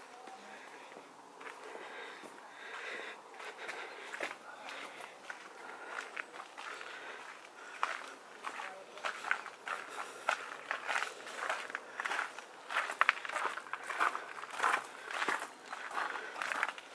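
Footsteps walking along a gravel path, a run of short crunches that grow louder and more regular in the second half.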